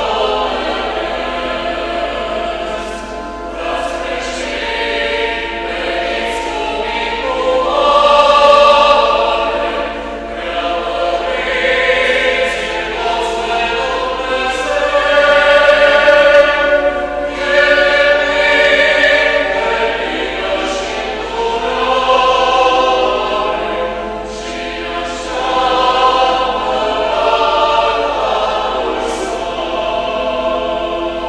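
A choir singing a slow hymn in a large church, its long held phrases swelling and fading.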